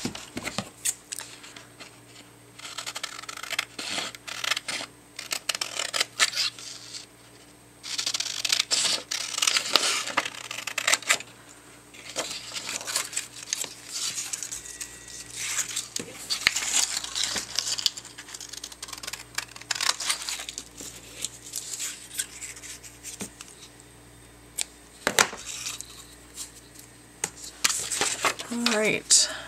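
Printed paper strips being handled, torn and cut with scissors: bursts of paper rustling a few seconds long, with scattered sharp clicks.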